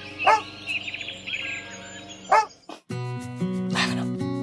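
A dog barks twice, about two seconds apart, over bird chirps. Plucked acoustic guitar music starts about three seconds in.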